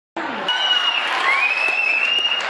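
Audience applauding, starting suddenly, with long high-pitched held calls rising above the clapping.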